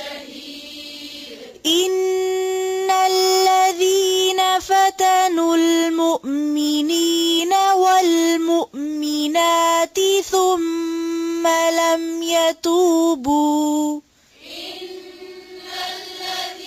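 Melodic Quran recitation in tajweed style by a single voice: long held notes with ornamented turns, starting sharply about two seconds in and breaking off abruptly near the end. A fainter reciting voice is heard before and after it.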